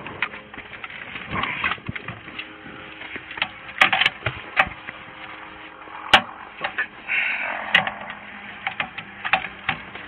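Scattered clicks, knocks and rustling of clothing and gear inside a car as people settle into their seats, over a faint steady hum. The sharpest knocks come about four and six seconds in.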